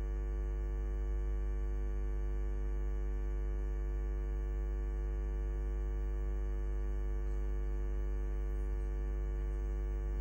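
Steady electrical mains hum: a low, unchanging drone with buzzy overtones.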